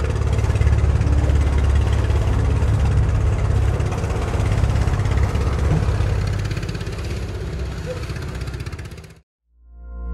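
A boat engine runs steadily with water and wind noise, then cuts off abruptly about nine seconds in. Soft ambient music starts just before the end.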